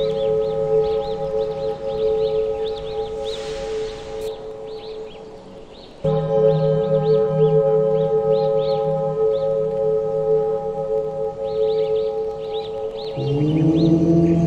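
Ambient meditation music of sustained drone tones with birds chirping over it. The drone fades away a few seconds in, swells back at about six seconds, and moves to a new, lower chord near the end.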